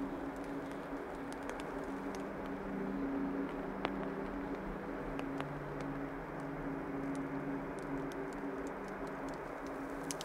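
Soft ambient soundscape of low, sustained drone tones that change to a new chord about halfway through, with a scatter of faint ticks.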